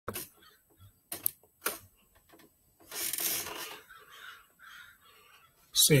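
Crows cawing a few times, short rough calls, among several sharp clicks.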